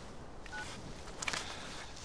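A short two-tone electronic beep about half a second in, from a small surveillance bug being planted at a car's rear number plate, then a brief click a little past one second in.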